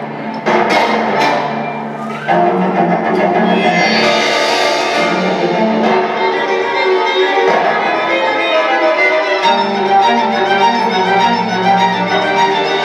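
Horror film score for bowed strings, with violins and low cellos holding sustained notes. A few short string accents come early, then the strings swell louder about two seconds in.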